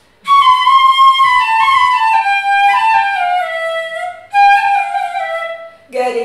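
Six-pitch bamboo Carnatic flute playing a short instrumental phrase of notes stepping downward. A brief break comes about four seconds in, then a second, shorter phrase starts a little higher and again steps down.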